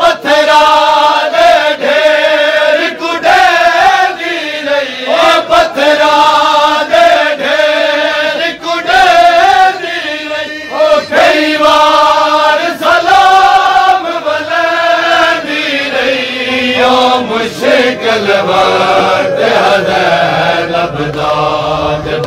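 A crowd of men chanting a Punjabi noha (a mourning lament) together. Sharp slaps of chest-beating (matam) keep time with the chant, roughly once a second.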